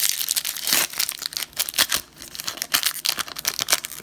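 Foil Pokémon trading-card booster pack wrapper crinkling and tearing as it is pulled open by hand, a dense run of sharp crackles.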